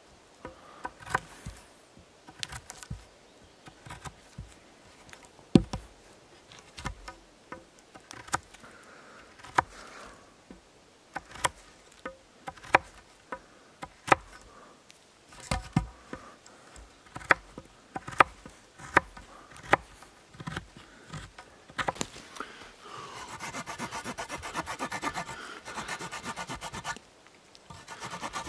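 A knife carving a notch into a green branch: irregular sharp cuts and knocks as the blade bites into the wood. Near the end, a small folding saw blade rasps back and forth in the cut for about four seconds with a buzzing sound.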